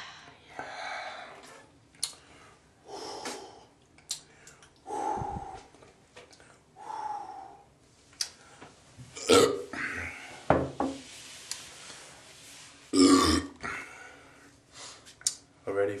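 A man belching repeatedly after gulping carbonated malt liquor: a string of separate burps a second or two apart, the loudest around the middle and about thirteen seconds in.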